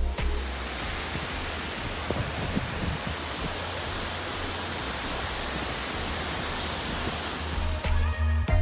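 Steady rushing of water pouring down an artificial rock waterfall, a continuous even hiss.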